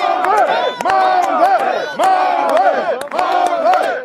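A large crowd of men shouting and yelling over one another, loud and continuous, with scattered hand claps.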